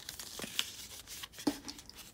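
Folded paper packet handled between the hands, rustling and crinkling, with a few short clicks.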